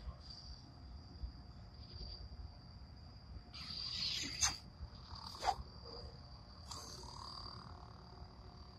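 Crickets chirping in a steady high trill. About three and a half seconds in, a rush of noise builds and ends in a sharp crack, followed by another sharp click about a second later and a short rush after that, as a lightsaber blade lights up and is swung.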